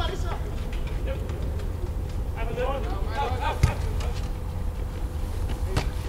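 Outdoor ambience: a steady low rumble, with faint distant voices calling about halfway through and one sharp knock just after them.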